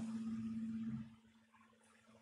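A steady low hum with faint background noise, dropping to near silence about a second in.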